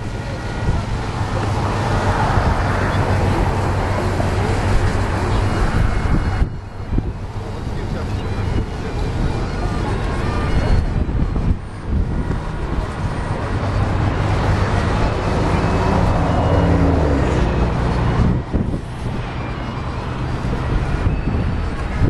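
Steady road traffic noise with wind on the microphone and people talking nearby. The noise dips briefly three times, about six, eleven and a half and eighteen seconds in.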